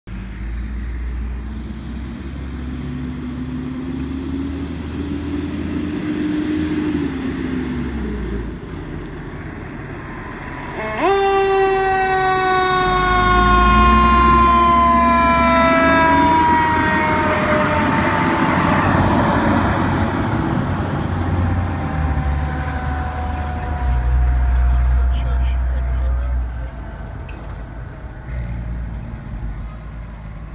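Fire ladder truck's engine pulling away and accelerating, with a loud, long warning blast from its siren or horn that starts suddenly about eleven seconds in and slowly falls in pitch as the truck passes and drives off. The truck's sound fades near the end.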